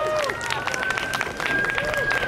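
A siren's single thin wailing tone rising slowly in pitch over city street noise, with scattered clicks and crowd sound.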